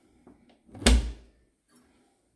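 A small wooden cupboard door being pulled open: a couple of light clicks, then one loud thud just under a second in.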